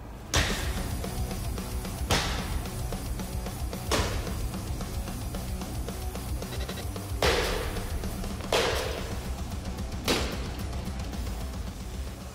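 Sickle sword chopping into an armored dummy: six sharp metal strikes, each with a short ringing tail, coming every one to three seconds with a longer pause in the middle.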